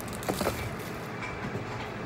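Faint rustling and a soft knock as items are lifted out of a cardboard shipping box, over a steady background hum.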